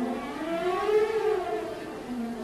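Opera orchestra playing a smooth sweep in pitch, several parts together, rising to a peak about a second in and then falling away.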